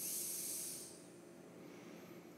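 A short breath out near the microphone: a high hiss that fades out about a second in.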